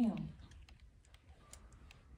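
A woman speaking into a handheld microphone finishes a word, then a short pause with a few faint, scattered clicks.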